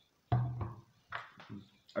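A man's short wordless vocal sounds, hummed and low-pitched, just after a swallow of a bottled drink, with a sudden start about a third of a second in and a second short sound about a second in.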